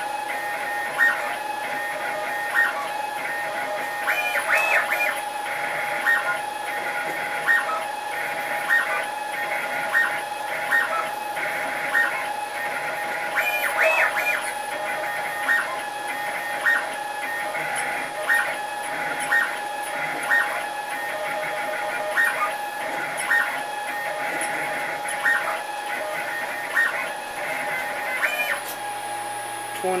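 6040 CNC engraving dog tags: the spindle runs with a steady whine, and the stepper motors chirp briefly, one or two times a second, as the axes make each short engraving move.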